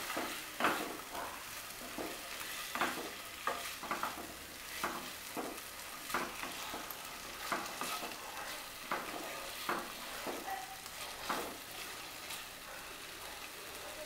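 Wooden spatula stirring and scraping spice-coated fried potato and raw banana pieces around a coated frying pan, with irregular scrapes over a steady sizzle of the mustard-oil masala frying.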